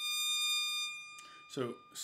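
Bowed psaltery: a single string bowed, sounding one high sustained note that starts abruptly, is strongest for about a second, then fades and rings on faintly.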